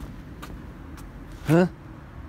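Steady low outdoor background rumble, with two faint clicks in the first second and a single short spoken "Hä?" near the end.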